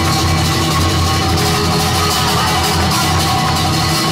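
Live flamenco music led by a flamenco guitar, played loud and without a break through a sound system.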